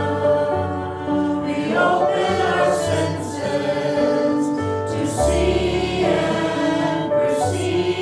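A choir singing slow, held notes over a low sustained accompaniment.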